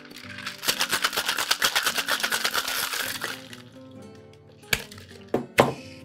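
Ice rattling hard and fast inside a metal tin-on-tin cocktail shaker as a rum cocktail is shaken to chill and dilute it; the rattle dies away after about three seconds. Near the end a couple of sharp metal knocks as the tins are knocked apart to break their seal.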